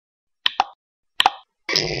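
Cartoon-style pop sound effects of an animated intro: four short pops in two quick pairs, then a louder hit near the end with ringing tones that carries on.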